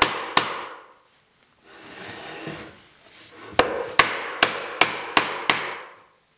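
Hammer or mallet tapping a wooden stool's stretcher and legs home during assembly: two taps at the start, then a quicker run of six taps about two and a half a second, each ringing briefly in the wood. A softer, noisy sound fills the gap between them.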